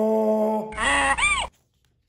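A man's voice imitating a donkey's bray, 'hee-haw', the 'haw' held long and steady on one pitch, followed by a shorter rising-and-falling vocal whoop. The sound cuts off suddenly about a second and a half in.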